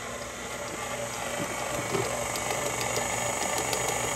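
KitchenAid Pro 500 stand mixer running on low speed, its flat beater turning flour into the wet batter: a steady motor hum with faint light ticks.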